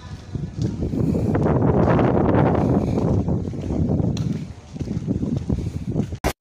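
A gust of wind buffeting the microphone, a noisy rumble with no pitch. It builds about half a second in and dies away again after about four seconds.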